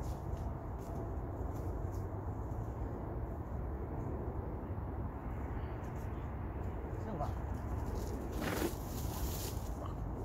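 Footsteps crunching through dry leaf litter and twigs, with steady wind rumble on the microphone. A brief vocal sound rises over it about eight and a half seconds in.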